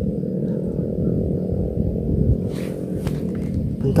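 A steady low motor hum. About two and a half seconds in there is a short hiss with a few clicks.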